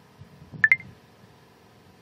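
Two sharp clicks in quick succession, a little over half a second in, each with a brief high ring: a computer mouse button being clicked.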